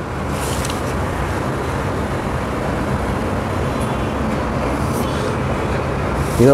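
Steady, even background rumble with a low hum underneath, running without a break.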